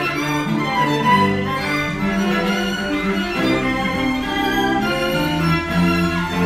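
Background music with bowed strings, a melody moving from note to note.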